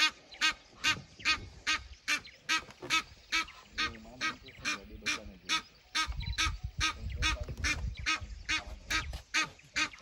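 Wild duck calling over and over in a steady run of short, sharp calls, about two to three a second. A low rumble joins in from about six seconds in and lasts about three seconds.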